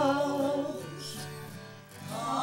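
A small group of voices singing, with acoustic guitar accompaniment. The sung phrase and the guitar die away through the second half.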